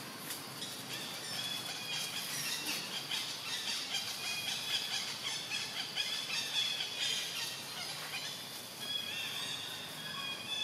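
Many overlapping high-pitched animal calls: short chirps and squeals, some held briefly at one pitch, others sliding, going on throughout.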